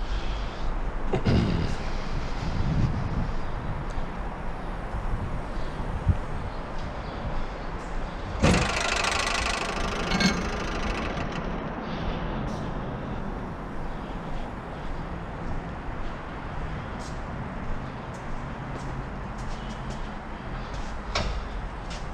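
Workshop sounds as a tool is fetched: a steady low hum under scattered knocks and handling noises. About eight and a half seconds in comes a loud scraping rattle lasting a second or two.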